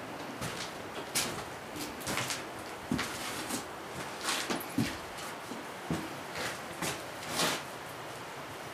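Footsteps and scuffs on the wooden floor of an empty cabin: about a dozen irregular knocks and scrapes over a steady background hiss.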